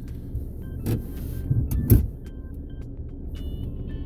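Car engine idling, heard from inside the cabin as a steady low rumble, with a few light clicks and knocks; the loudest knock comes about two seconds in.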